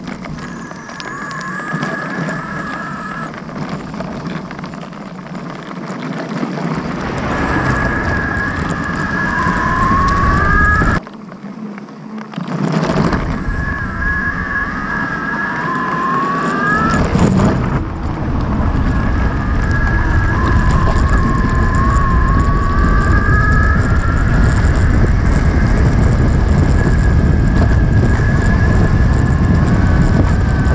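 Six-wheel electric skateboard rolling on tarmac: its electric motor whines, rising in pitch about four times as it picks up speed, over a steady rumble from the rubber tyres on the road.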